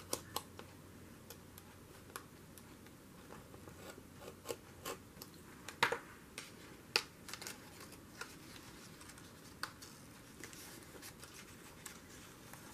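Light scratching and scattered sharp clicks and taps of a craft knife slitting paper and of paper cutouts being handled on a journal page; the two sharpest clicks come a second apart, about midway.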